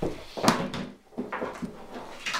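A few knocks and clunks of household objects being handled and set down, the sharpest about half a second in, as an electric iron is put away and a radio picked up.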